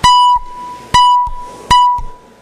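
The chamber's roll-call signal: three loud, sharply struck bell tones of the same pitch, a little under a second apart, each ringing briefly before it dies away. They mark the opening of the electronic vote.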